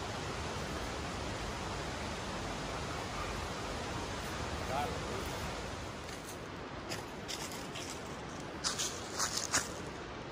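Steady outdoor noise haze that drops a little about six seconds in, followed by a scattering of short sharp taps and clicks, the loudest cluster about nine seconds in.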